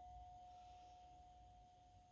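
Metal singing bowl ringing out after a strike: one faint, steady tone with a fainter higher overtone, slowly fading.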